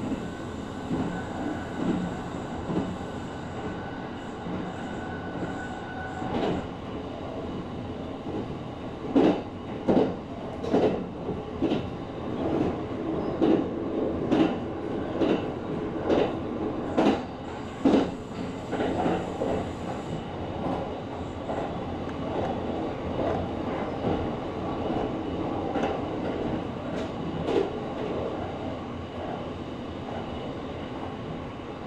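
Kintetsu Series 23000 Ise-Shima Liner electric train running, heard from inside its front passenger cabin: a steady rumble with a thin whine that stops about six seconds in. About a third of the way in, a run of sharp wheel clacks comes roughly every second as the wheels cross points and rail joints, then thins out.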